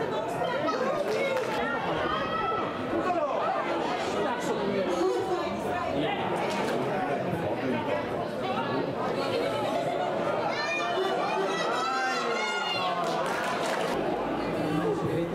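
Voices at a football match: several people shouting and calling over one another, with a run of louder, high-pitched shouts about ten seconds in.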